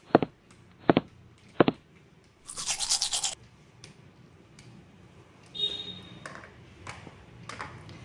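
Three sharp clicks about 0.8 s apart in the first two seconds. Then about a second of brisk toothbrush scrubbing, bristles brushing back and forth, which starts and stops abruptly.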